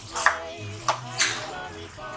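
Music playing, with three sharp knocks of a plastic spoon against a metal pot as a tomato stew is stirred, about a quarter second, one second and just past one second in.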